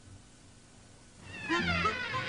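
A cartoon character's high, squeaky laugh begins near the end, after more than a second of near quiet.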